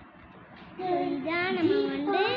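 A young girl's voice singing in long held notes, starting a little under a second in after a quiet opening.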